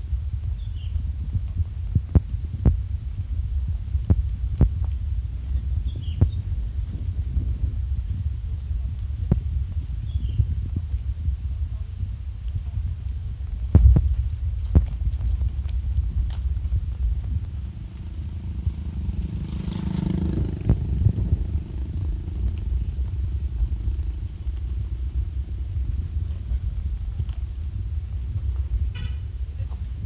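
Car cabin rumble from driving slowly over a rough gravel and dirt road, with frequent sharp knocks and thumps as the tyres and suspension hit stones and bumps. About twenty seconds in, another engine rises and fades as a vehicle passes.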